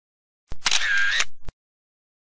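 A short intro sound effect, about a second long, that starts and ends with sharp clicks and has a mechanical whirr between them, like a camera shutter firing.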